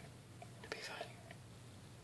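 Faint whispering with a few soft clicks in the first second and a half, over a low steady hum.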